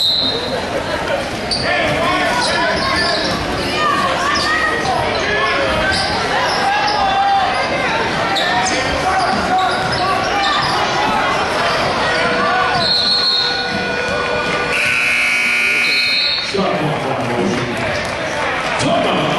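Basketball game in a gymnasium: crowd voices and shouting echo through the hall while a basketball is dribbled on the hardwood floor. From about twelve seconds in, a steady high tone is held for a few seconds, then cuts off.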